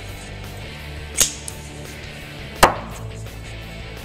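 Two sharp sounds over background music: a crisp snap about a second in, from the CRKT Hissatsu folder's assisted-opening blade flicking open, then a louder, fuller thunk about a second and a half later as the knife's tip is stabbed into a wooden block.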